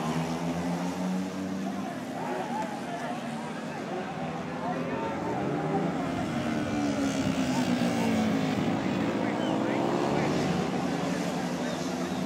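Engines of small 70 cc racing motorcycles going past on the circuit, their notes sliding down and then rising again as they rev through the gears. Around the middle the notes of more than one bike overlap.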